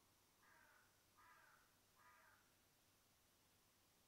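Near silence broken by three faint, harsh bird calls, caws spaced under a second apart, starting about half a second in.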